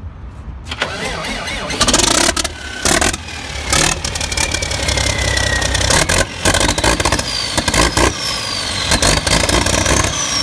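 Used Hino PF6 six-cylinder diesel engine cranking and catching about a second in, then running loud and uneven. A fainter whine falls in pitch several times in the second half.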